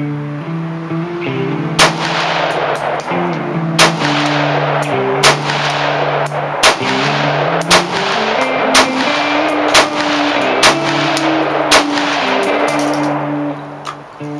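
Rock River Arms LAR-15 AR-15 rifle firing semi-rapid, about nine sharp shots starting about two seconds in, spaced roughly a second apart and quickening slightly, with fainter cracks between them. Acoustic guitar music plays underneath.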